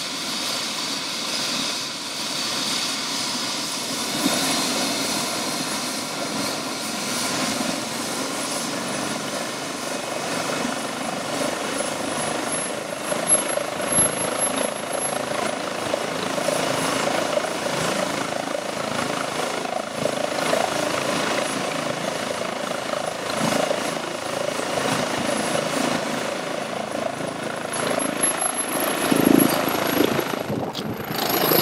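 Eurocopter EC135 air-ambulance helicopter running on the ground with its main rotor turning: a steady turbine whine and rotor noise as it warms up for take-off.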